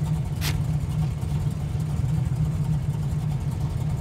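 Steady low drone of a car running, heard from inside the cabin, with a brief short noise about half a second in.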